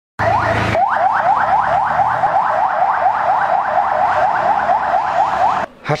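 Ambulance siren in a fast yelp: a rising wail repeated about four to five times a second, which cuts off suddenly near the end.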